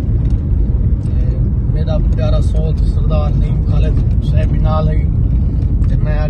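Steady low road and engine rumble inside a car's cabin, with a man talking over it in short phrases.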